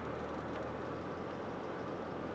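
Steady engine and road noise heard inside a Ford minivan's cabin while it is being driven, with a low even hum underneath.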